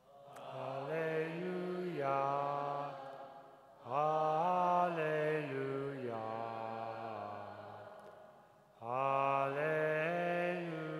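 A solo male voice singing a slow liturgical chant melody, held notes stepping up and down, in three long phrases with short breaks between them.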